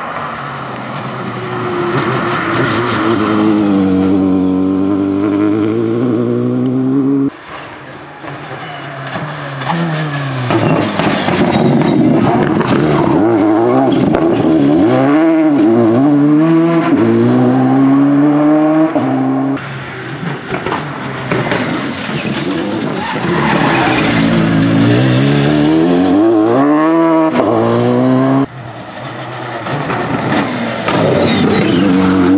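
Citroën DS3 rally car engine revving hard, its pitch climbing and dropping through gear changes and lifts for corners. Several separate passes are joined by abrupt cuts, about a quarter of the way in, at two-thirds and near the end.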